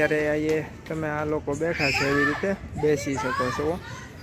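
A man's voice talking, with some drawn-out vowels, in several phrases broken by short pauses.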